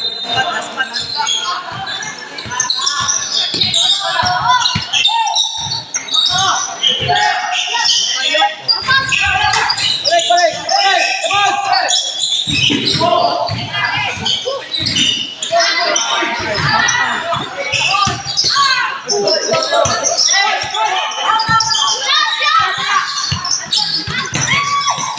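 Basketball bouncing on a hard court during live play, with voices of players and spectators throughout, echoing in a large covered gym.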